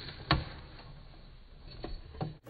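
A single sharp knock about a third of a second in, then a couple of faint clicks near the end, over low room noise: handling noise as the tarantula snatches the offered wax worm and startles the keeper.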